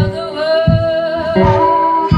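Live blues band playing: a singer holds one long note with vibrato over guitar, with a low beat landing about every 0.7 seconds.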